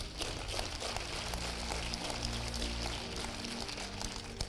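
Soft background music of steady, sustained low notes.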